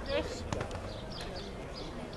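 Ballfield ambience: a voice call trailing off at the start, faint distant voices, and a single sharp knock about half a second in.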